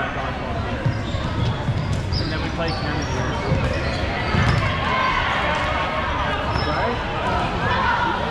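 Dodgeballs thudding and bouncing on a gym floor, several irregular thuds, amid continuous shouts and chatter of players echoing in a large gymnasium.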